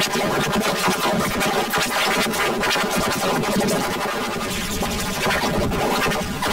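A TV commercial's soundtrack run through heavy distortion effects: its music and voices are warped into a dense, harsh, continuous electronic noise in which no words can be made out.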